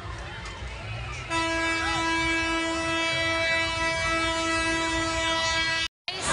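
A long, steady horn blast held at one pitch, starting about a second in and cutting off just before the end, over fairground crowd noise.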